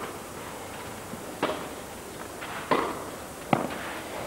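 Tennis racquets striking the ball during a rally on a clay court: three sharp knocks, about one every second, over a low murmur from the crowd.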